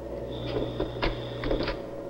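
Slide projector running: a steady low hum with a thin high whine and a few light mechanical clicks about half a second apart.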